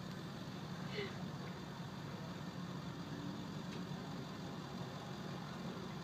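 Steady low hum of a car engine idling, heard from inside the car's cabin.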